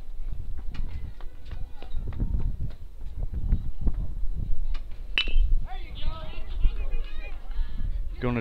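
Metal baseball bat striking the ball about five seconds in, a sharp ping with a brief ring, over a steady low rumble of wind on the microphone. Right after, players and spectators start shouting and yelling.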